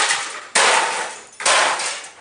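Hammer blows smashing a wrecked desktop computer case: two sharp strikes about a second apart, each ringing out and fading, with the tail of a previous blow at the start.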